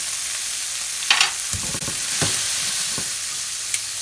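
Shrimp frying in olive oil with garlic in a nonstick pan, a steady sizzling hiss. A few light knocks and clatters come in the middle.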